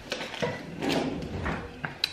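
Several light plastic clicks and knocks from a small food chopper being handled and opened, its bowl holding freshly chopped onion and garlic.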